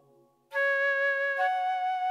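Lowrey Fanfare home organ: the previous chord fades away, then about half a second in a solo melody voice enters on a held note and steps up to a higher note.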